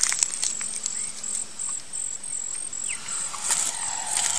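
Forest ambience: an insect calling in a steady train of short, high pulses, about three a second. Over it come scattered small crackles and snaps of bark and dry leaves, more of them near the end, as a tamandua clambers along a fallen log.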